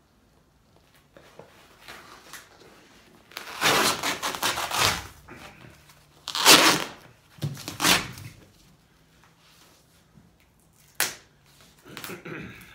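Glued vinyl roof covering and its foam backing being ripped off a car's metal roof in four tearing pulls: a long one about three and a half seconds in, two shorter ones around six and a half and eight seconds, and a brief one near the end.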